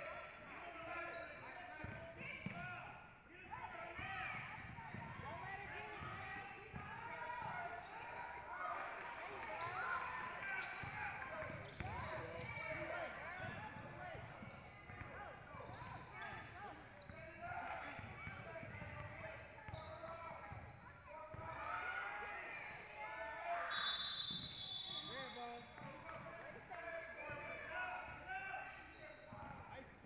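A basketball bouncing on a hardwood gym floor during play, with players' and spectators' indistinct voices throughout, in an echoing hall.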